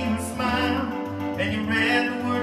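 Suzuki Omnichord OM-84 playing sustained electronic chords over a bass note, the bass changing about halfway through.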